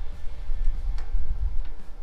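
Low, uneven rumble of wind buffeting the microphone, with one sharp click about a second in.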